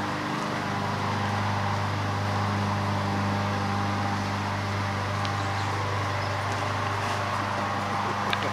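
A steady, unchanging low machine hum, made of several even tones like a motor or engine running at constant speed.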